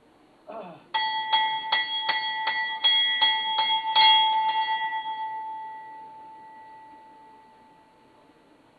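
A brass temple bell rung rapidly during aarti, about three strikes a second for nearly four seconds. It then stops and is left to ring out, fading slowly.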